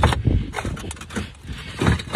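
A slipped clay roof tile being lifted by hand, clinking and scraping against the neighbouring tiles, with a sharp knock at the start and a few more uneven knocks.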